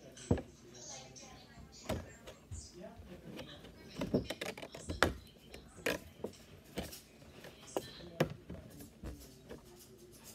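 Clear plastic mantis enclosure being handled: a string of sharp clicks and knocks as the thin plastic sheet is bent and pressed against the cage, about ten over several seconds, with faint voices in the background.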